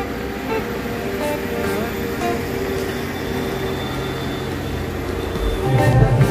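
Music with held melodic notes over steady vehicle and street noise, with a loud bass beat coming in near the end.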